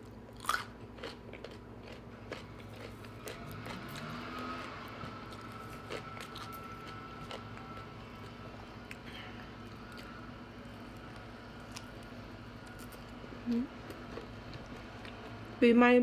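Close-miked mouth sounds of eating: a crisp bite about half a second in, then steady chewing with small wet clicks.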